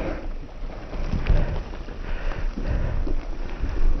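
Wind buffeting the microphone as a Giant Reign E+ electric mountain bike rolls along a dirt trail, with a low, unsteady rumble of tyre and wind noise and a few light rattles from the bike.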